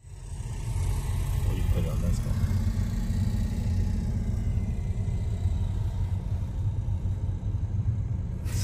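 Steady low rumble of a car's engine and tyres, heard from inside the cabin while driving slowly.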